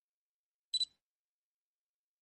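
A single brief, high-pitched double click about a second in, in otherwise dead silence.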